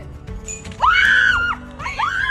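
A woman screaming in excitement, one long high scream about a second in and another starting near the end, as she celebrates a disc going into the basket. Background music plays underneath.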